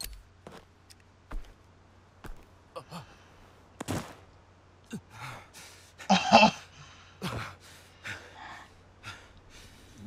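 Shocked gasps and sighs from two people breathing hard behind their hands, with a short voiced gasp a little after six seconds in. A few sharp knocks and clicks fall in between, the loudest just before four seconds in.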